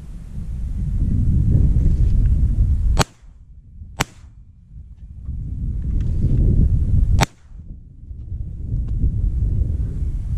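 Three shotgun shots fired at pigeons: two a second apart about three seconds in, then a third about three seconds later. Each is a sharp crack, and between them is a low wind rumble on the microphone.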